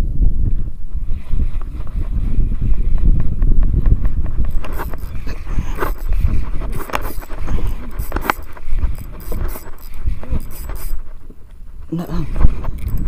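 Wind buffeting the microphone in a small boat on open sea, a steady low rumble. From about four seconds in, scattered clicks and knocks come from the rod and reel being handled.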